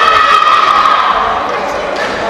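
Voices cheering together in a sports hall, a long sustained shout that is loudest at first and tails off in the second half.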